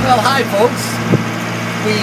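A sailboat's inboard engine running with a steady low hum while motoring, with a single short knock about a second in.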